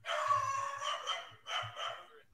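A dog going crazy, howling: one long cry of about a second and a quarter, then a shorter second cry near the end.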